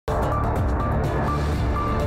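A news programme's opening theme music starting abruptly, with sustained low notes and short high notes.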